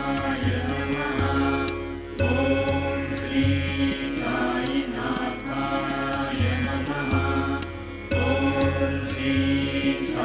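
Devotional chant music: a sung mantra over a steady drone, its phrases recurring every two to four seconds, with a low bass note pulsing beneath.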